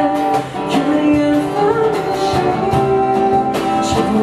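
Live band playing a pop song: strummed acoustic guitar with cajon beats, and a singer's voice over them.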